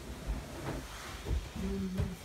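Body movement on a folding massage table as a person pushes herself up off someone lying on it: clothing and a blanket rustling, with two soft bumps. A short, low murmured hum near the end.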